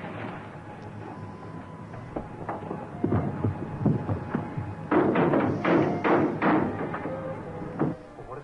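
Repeated thuds and knocks of a tire iron being forced against the rear door of a panel truck from inside, as the trapped occupants try to break it open. The blows are scattered at first and grow louder and sharper from about five seconds in.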